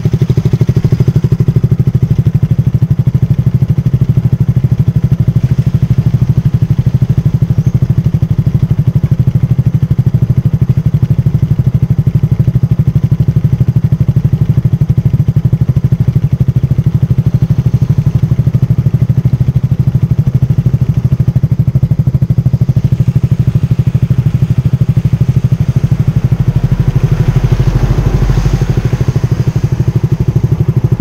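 Motorcycle engine idling close to the microphone with a steady, even beat. A deeper, louder rumble swells for a couple of seconds near the end.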